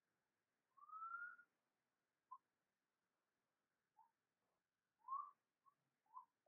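Near silence with a few faint, short whistle-like chirps: a longer rising one about a second in, two brief ones, and another rising chirp near the end.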